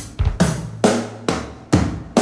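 Rock drum kit playing alone in a song intro: a steady beat of bass drum and snare hits, a little over two a second, with cymbals ringing over them.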